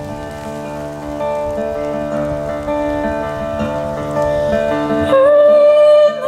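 Acoustic guitar playing an instrumental passage of a slow folk song, with sustained notes ringing under it. About five seconds in, a louder, slightly wavering held melody note comes in.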